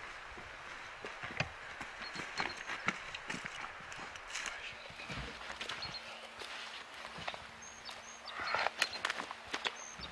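Footsteps on loose stones and rocky ground: irregular crunches and clicks of boots on scree, busier near the end.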